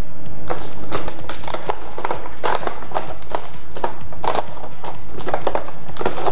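Irregular plastic clicks and taps from handling small reagent bottles in the plastic case of an aquarium water-test kit, while the transport tape is peeled off a bottle.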